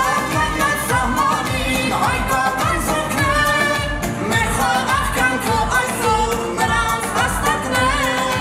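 A boy singing a pop-style song live through a microphone and PA, over amplified synthesizer keyboard backing with a steady beat.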